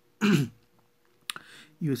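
A man clearing his throat once, short and loud, early on, followed about a second later by a single faint click.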